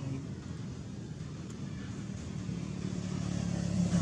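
A motor engine running with a steady low hum that grows louder near the end.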